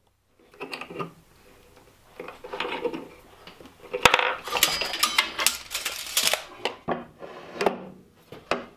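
Lengths of aluminum square tubing being handled and slid along a miter saw's fence: irregular metallic clinks, clatter and scraping, busiest and loudest from about four seconds in until just past six.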